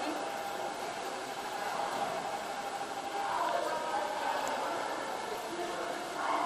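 Steady background noise of an indoor swimming-pool hall with faint, echoing voices, a little stronger from about three seconds in.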